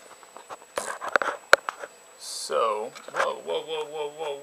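Handling noise from a camera being moved: a run of clicks and knocks, one sharp click the loudest, then a short hiss. In the second half a voice sounds with a wavering, sliding pitch.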